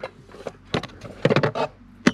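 A few light clicks and knocks from handling as the camera and hands are moved around the plastic water fittings, coming at the start, just before one second and again around one and a half seconds.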